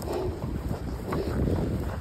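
Wind buffeting the phone's microphone: a steady low rushing noise.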